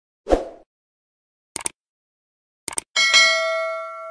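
Subscribe-button animation sound effects: a short thud, then two quick double clicks like a mouse button, then a bright notification-bell ding that rings out for about a second and a half.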